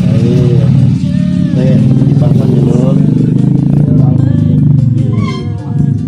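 A motorcycle engine running steadily at idle, a continuous low rumble, with voices over it; music with a regular beat comes in near the end.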